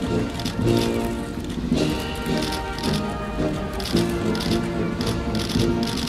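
Military band playing music with brass and drums during the inspection of a guard of honour.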